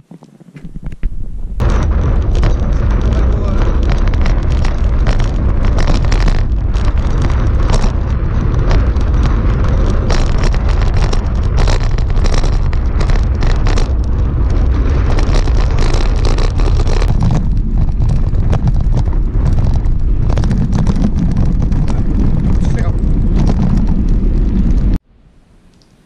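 Riding noise picked up by an action camera in its waterproof housing on a handlebar mount while the bicycle rolls down a street: a loud, steady rumble full of knocks and rattles from road vibration. It starts about a second and a half in and cuts off suddenly near the end.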